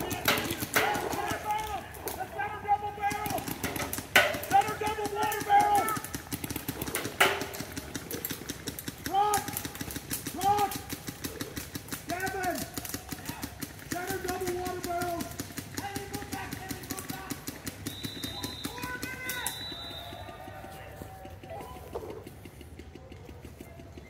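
Paintball markers firing in rapid strings of shots across the field, mixed with players' long shouted calls.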